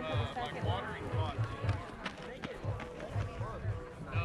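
Recorded music playing: a singing voice over a repeating bass beat.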